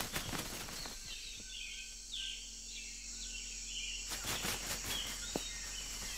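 Tropical rainforest ambience: a steady high-pitched insect drone, with a run of short bird chirps from about one to four seconds in and a few more soon after.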